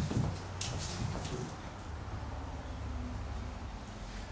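Quiet classroom room tone with a steady low hum and a few faint, short scratches of a marker writing on a whiteboard.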